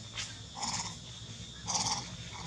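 Two short, harsh calls from a long-tailed macaque, the first about half a second in and the second near the end.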